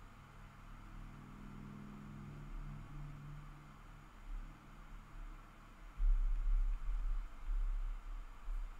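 Quiet background: a faint low hum, with a louder low rumble starting about six seconds in.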